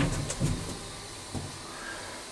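A sharp click, then a couple of soft knocks over a low steady hum inside the cab of a small Whirlteq hydraulic elevator.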